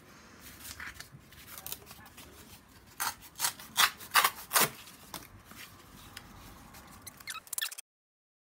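Pieces of corrugated cardboard being handled and shuffled by hand. There is light rustling and rubbing, then a run of five sharp, loud scraping strokes about three to four and a half seconds in, and a quick patter of small clicks just before the sound cuts off.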